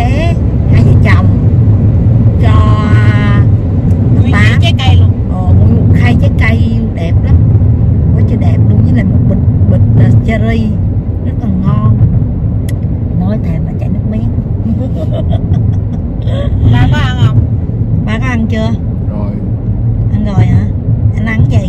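Steady low road rumble inside a moving car's cabin, with people talking over it.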